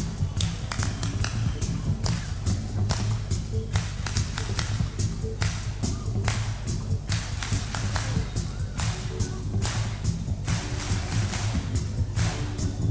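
Live band playing a funk dance groove, with a heavy steady bass line under sharp drum hits at about four a second.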